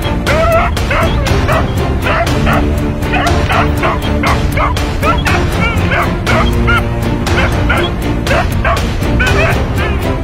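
A Tibetan Mastiff puppy yipping and barking in short, repeated calls over music with a fast, steady beat.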